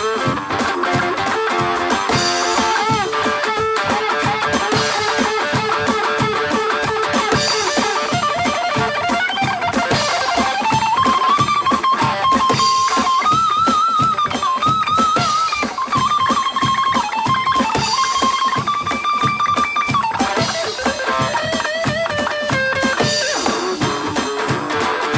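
Electric guitar solo in a blues-rock song over a steady beat, with long held lead notes that bend up and down through the middle of the passage.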